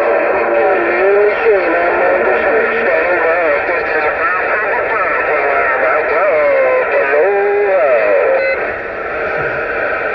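Uniden Grant LT CB radio receiving a busy channel 6: loud, narrow-band, garbled voice-like audio with overlapping pitches that slide up and down and no clear words. It thins briefly near the end.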